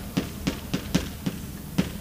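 Chalk knocking and tapping against a blackboard as an equation is written: about six sharp, irregularly spaced taps.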